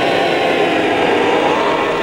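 Gas welding torch flame hissing steadily.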